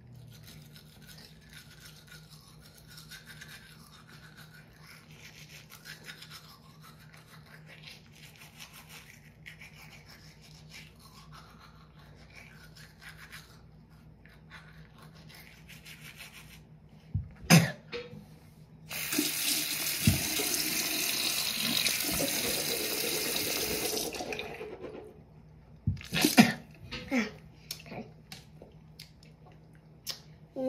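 Manual toothbrush scrubbing teeth, faintly, for the first sixteen seconds or so. Then a few knocks, and a tap runs into the sink for about five seconds, followed by more knocks and splashes.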